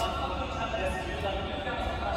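Race commentator's voice calling a horse race over public-address loudspeakers, heard at a distance in the open air.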